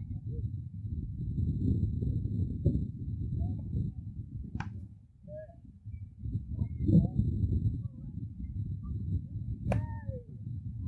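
A baseball bat hitting tossed balls in batting practice: two sharp cracks about five seconds apart, the second ringing briefly. A steady low rumble runs underneath.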